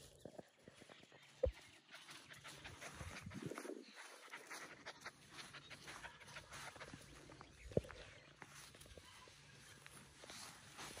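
An Australian Shepherd puppy panting faintly and scampering in the grass at a person's feet, with light rustling and two short soft knocks, one about a second and a half in and one later on.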